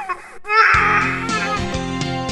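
A baby crying, one wavering wail about half a second in. Background music with steady low notes comes in under it.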